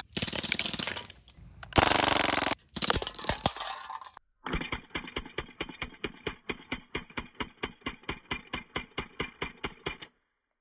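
Crosman DPMS SBR CO2 BB rifle firing a full-auto burst at aluminium cans, a dense rattle of shots and BBs striking the cans, for about four seconds. After a brief break the burst is heard slowed down: an even run of about five or six drawn-out pops a second.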